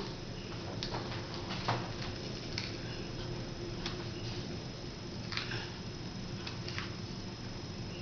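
Faint, scattered clicks and rustles of a flat iron being opened, clamped on and drawn down through hair, over a steady low hum.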